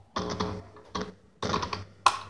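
Electric guitar played in three short bursts of fast picking on muted strings, each stroke sharp and clicky, the notes stopping abruptly between bursts.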